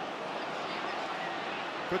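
Steady murmur of a large football stadium crowd, an even background hubbub with no single sound standing out.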